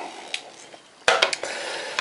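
A glass mug set down on a stainless steel compartment tray: a sharp clink about a second in, followed by a few smaller knocks.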